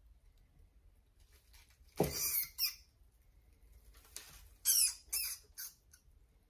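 Rat pup squealing as a ball python seizes and coils around it: a burst of high-pitched squeals about two seconds in, the first with a dull thud under it, then three or four more short squeals near the end.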